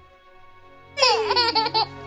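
A baby laughing loudly in quick bursts, starting about a second in with a high laugh that slides down in pitch, over soft background music.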